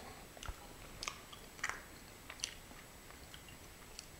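Faint mouth sounds of a man chewing a bite of a hot, soft microwaved mini cheeseburger, with a handful of short, irregular wet clicks.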